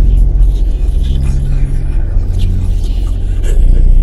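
A loud, steady low rumble with a deep drone.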